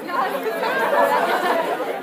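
A roomful of students talking and murmuring at once, many overlapping voices at a steady level.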